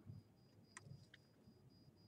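Near silence: faint room tone with a thin, steady high whine and a couple of faint clicks.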